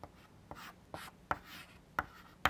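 Chalk writing on a blackboard: a quick series of short taps and scrapes as letters and brackets are drawn.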